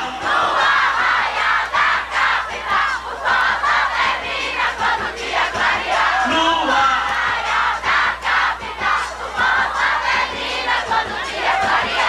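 A large concert crowd shouting together, many voices at once, with the band's music dropped out.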